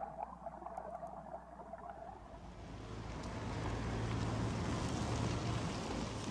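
Vehicle engine and road noise swelling in from about halfway through, with a steady low hum under it.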